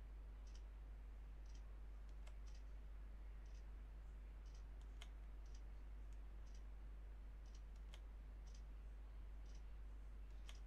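Faint clock-like ticking about once a second, with a sharper click roughly every three seconds, over a steady low hum.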